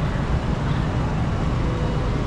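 Steady outdoor city background noise: an even, low rumble of traffic with no distinct events.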